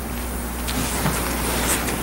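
Steady low electrical hum with an even hiss from the courtroom microphone and old video recording, with a couple of faint brief sounds about a second in.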